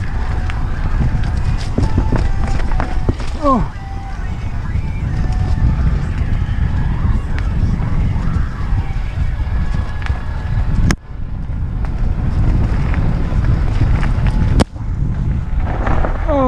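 Norco Aurum downhill mountain bike running fast down a rough trail: wind buffets the microphone over tyre rumble and a steady clatter of rattles and knocks. A short falling vocal cry comes about three seconds in, and two sharp cracks come near the three-quarter mark and just before the end.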